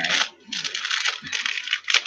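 Clear plastic bag crinkling as it is handled: a dense crackle that comes and goes, with a short lull about half a second in.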